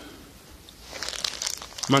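Crinkling of the plastic packaging of an emergency blanket being handled, starting about a second in.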